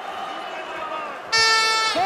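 A loud, steady electronic horn sounds about a second and a half in for roughly half a second over arena background noise. It is the end-of-round horn in an MMA cage fight.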